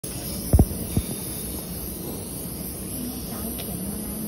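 Operating room background: a steady hum and hiss of equipment, with two dull thumps about half a second and a second in.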